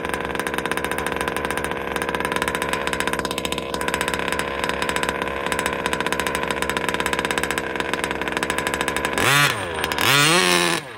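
Losi DBXL 2.0 RC buggy's small two-stroke gas engine running at a steady low speed, then revved hard with a quick rise and fall in pitch about nine seconds in.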